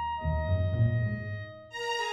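Chinese-style orchestral music: held notes over a low swell in the bass, with a new, fuller chord coming in near the end.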